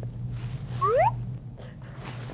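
A person's short, rising 'ooh'-like vocal sound about a second in, over a steady low electrical hum.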